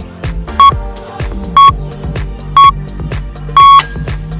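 Workout interval timer beeping the end of the interval countdown: three short electronic beeps a second apart, then a longer final beep. The beeps sit over steady background music with a beat.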